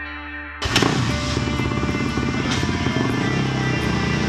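Kawasaki KX450F motocross bike's single-cylinder four-stroke engine starting up about half a second in and then running steadily, with music underneath.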